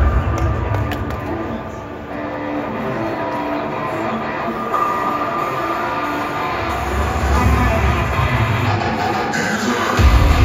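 Music and sound effects from a player-introduction video played over a ballpark's public-address system, heard from the stands, with a deep bass rumble that drops away after the first second and builds back in about seven seconds in.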